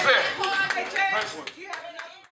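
A group of people clapping and talking together, the claps scattered and the whole sound fading out near the end.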